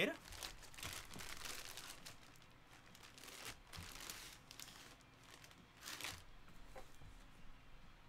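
Clear plastic bag around a jersey crinkling and rustling as it is handled and set down, in several uneven bursts.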